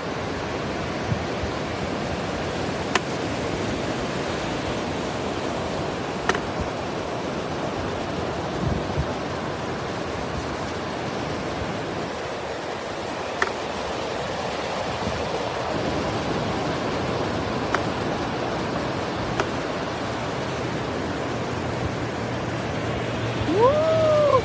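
Ocean surf breaking and washing in, a steady rushing wash with a few brief sharp clicks.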